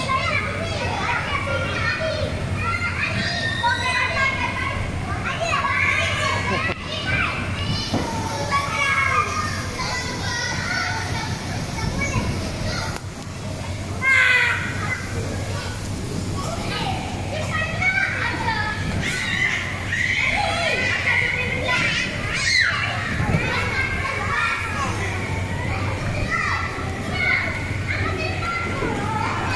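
Many young children's voices overlapping as they play, with chatter and calls throughout, over a steady low hum.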